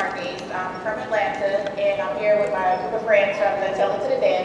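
A person's voice over a hall sound system, making a string of short, high-pitched vocal sounds.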